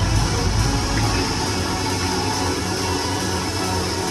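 Music over an arena's PA system, mixed with the steady noise of a large indoor crowd; the music's bass beat drops out about a second in.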